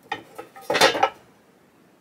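Two short knocks, then a louder clattering scrape just under a second in, as a wooden guitar neck blank is shifted across a box topped with a metal license plate.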